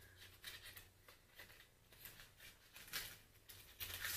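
Faint, scattered rustles and small clicks of packaging being handled as a makeup brush is opened.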